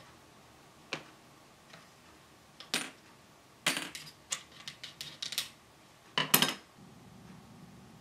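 Small model-ship deck fittings being handled and set down on a wooden model hull's deck: light clicks and taps, one about a second in, one near the three-second mark, a quick run of clicks for about two seconds in the middle, and a last short burst near the end.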